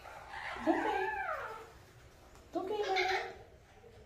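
A parrot, held wrapped in a towel while it is given a vaccine injection, making two rising-and-falling calls: a longer one about half a second in and a shorter one about three seconds in.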